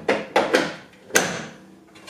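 Sharp plastic clicks and knocks as a DeWalt battery pack is slid and latched into the mower's plastic battery compartment: three hard clicks in the first second or so, then quieter handling.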